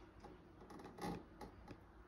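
Faint, scattered light clicks and taps from handling a fog humidifier and its plastic hose, the loudest about a second in, over a low steady hum.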